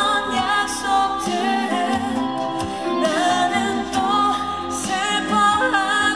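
A woman singing live into a handheld microphone over instrumental accompaniment, amplified through the stage sound system.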